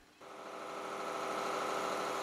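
Truck engine idling steadily, fading in just after the start.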